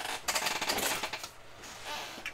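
A quick run of small clicks and rattles, about a second long, starting just after the beginning, with a few fainter clicks near the end.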